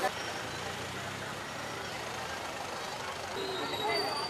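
Steady outdoor street ambience: a low engine rumble under the faint murmur of a crowd.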